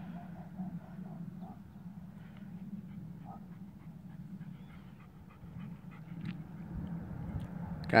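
Young German shepherd panting softly, over a steady low hum.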